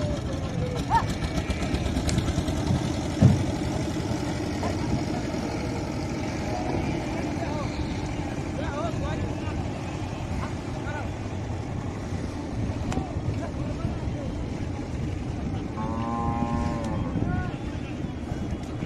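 Water buffalo lowing in the river, with one long, strong call near the end, over a steady low engine drone and scattered distant calls. A sharp knock about three seconds in is the loudest moment.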